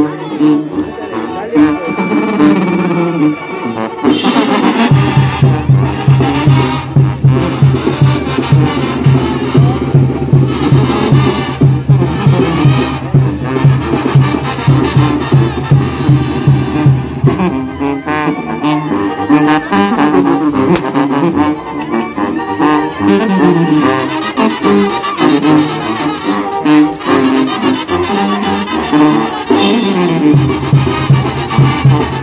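Mexican banda (brass band) playing, with sousaphones, trumpets and trombones over drums. A pulsing bass line on the sousaphones comes in about five seconds in and changes to a different figure a little past the middle.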